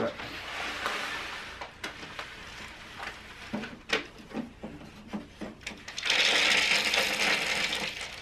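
Hamster seed mix poured from a plastic bag into a cardboard egg carton. There are scattered rattles and crinkles of the bag at first, then a steady pouring rush of seeds during the last two seconds.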